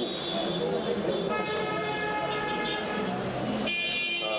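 A vehicle horn sounds in one long, steady blast of about two and a half seconds, starting a little over a second in. A second horn-like tone of a different pitch starts near the end, over a murmur of background voices.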